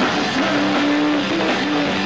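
Live punk rock band playing, with distorted electric guitars and drums. A guitar holds a long note, sliding up into it about half a second in and again near the end.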